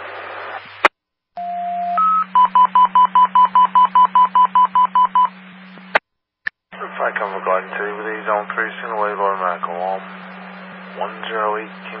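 Fire dispatch radio alert tones heard over a scanner: a steady tone, a short higher tone, then a rapid run of about twenty beeps, roughly seven a second. They precede a dispatch, followed after a squelch click by the dispatcher's voice over the radio.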